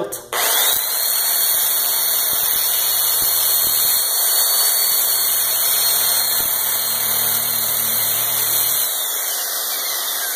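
A slow-speed (2300 rpm) right-angle car polisher with a sanding disc starts up with a rising whine and then runs steadily, the disc grinding along a steel knife blade. Near the end it is switched off and its whine falls away as it winds down.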